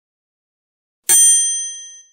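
A single bright, bell-like ding sound effect strikes about a second in and rings away over the following second.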